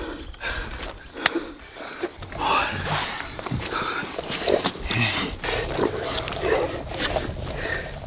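A man breathing hard and gasping after nearly drowning, with a few sharp clicks and low murmurs around him.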